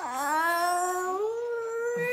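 Toddler crying: one long held wail that rises slowly in pitch and carries on past the end.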